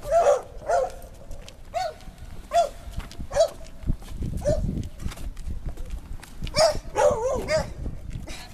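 A dog barking in short single barks spaced roughly a second apart, then a quicker run of barks near the end, over footsteps on wooden dock boards.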